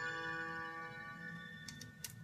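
The final held chord of a keyboard accompaniment ringing on and fading away, followed by two sharp clicks near the end.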